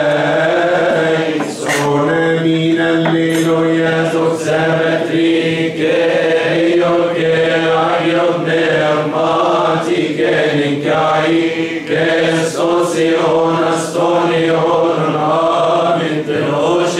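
Men's voices chanting a Coptic liturgical hymn in unison, a slow, ornamented melody over a steadily held low note. A few bright metallic strikes of a deacon's hand triangle ring out over the chant, around two and four seconds in and again near the end.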